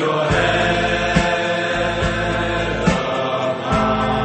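Background music: long held chords with a steady beat just under once a second.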